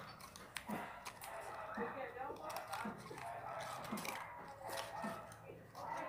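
Faint small clicks and rustles of fingers handling and folding a small ready-made ribbon bow, peeling it off its backing.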